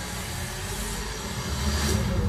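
Trailer sound design: a dark, noisy low rumble with hiss above it, swelling a little louder near the end as it builds toward the title card.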